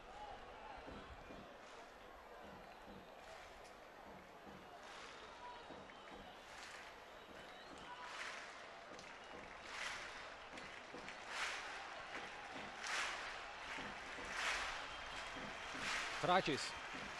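Faint stadium crowd noise from a football match, swelling and falling about every second and a half in the second half.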